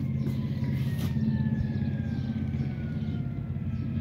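Steady low mechanical hum, with a faint whine that falls slowly in pitch.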